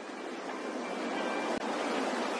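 A steady rushing noise like surf, swelling slightly, with faint music tones underneath and a brief dropout about one and a half seconds in.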